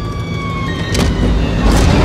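A 1970 Dodge Charger's V8 engine revving hard under full-throttle acceleration, its low rumble building, with two short sharp bursts about one second in and near the end. Held music tones slide down in pitch in the first half.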